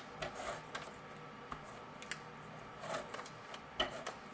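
A handheld adhesive tape runner pressed and drawn across cardstock, with brief rustles of paper and scattered light clicks, and a sharper click near the end.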